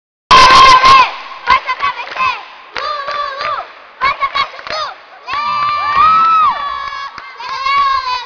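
Children's voices shouting and cheering in a large, echoing gym hall, loudest in a burst at the start and then in repeated calls.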